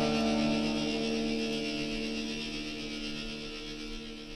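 Indie pop/shoegaze band's held guitar chord ringing on and fading steadily, with no new notes struck.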